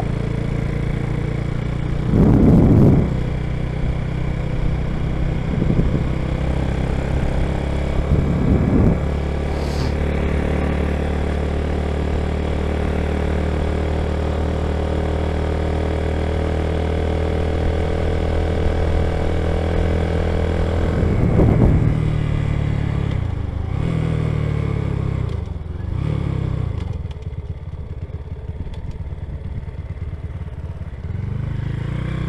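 Honda C90's small single-cylinder four-stroke engine running at a steady cruise, with a few short loud clatters along the way. Near the end its revs fall away and waver as it slows.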